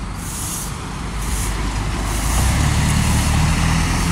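Heavy road vehicle, a truck or bus, running close by on a city street. Its low engine rumble grows louder from about halfway through, over general traffic noise.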